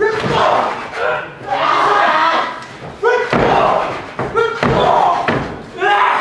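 Loud shouting voices with several heavy thuds of bodies and boots on the wrestling ring mat.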